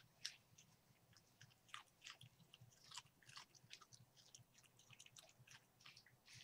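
Faint, irregular clicks and crackles of a dog chewing and mouthing plush toys in its bed.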